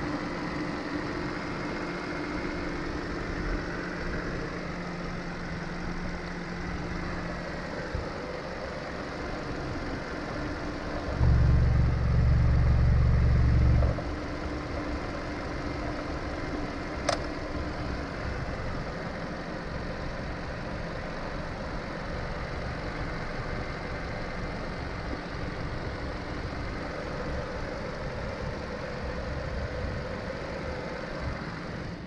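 Hyundai YF Sonata inline-four engine idling steadily under the open hood. A louder low rumble lasts about three seconds near the middle, and there is a single sharp click a few seconds later.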